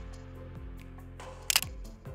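Sony ZV-E10 mirrorless camera's shutter firing once, a quick click about three-quarters of the way in, over steady background music.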